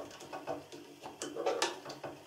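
Small plastic cleaning brush scraping and ticking inside the plastic bobbin case holder of a Janome computerized sewing machine's drop-in (horizontal) hook, clearing out packed lint. The sound is a quiet run of irregular scratches and small clicks, thicker in the second half.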